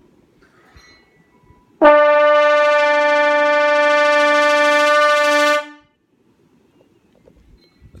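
A trombone holds one high note for about four seconds, played through a spinning fan. The note starts sharply about two seconds in, stays steady in loudness, and cuts off near six seconds.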